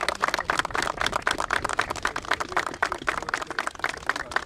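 A group of people applauding, many hands clapping at once in a dense, uneven patter.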